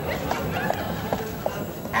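Footsteps of shoes on a paved street, a steady walking rhythm of sharp knocks.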